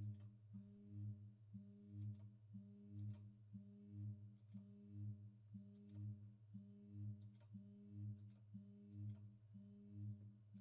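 Faint computer mouse clicks at irregular intervals over a low hum that swells and steps in pitch about once a second.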